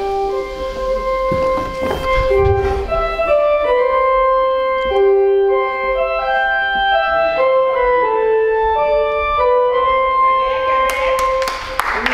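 A slow keyboard melody of held notes, in the manner of a wedding march, with a few clicks and some noise near the end.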